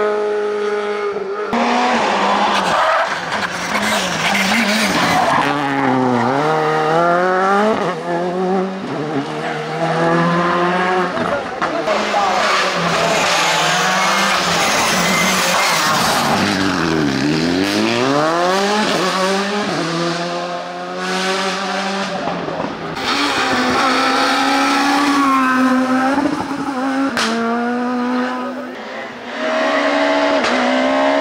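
Rally cars at full speed, one after another, engines revving high, dropping sharply as they brake and change down for corners around 6 and 17 seconds in, then climbing again on the throttle.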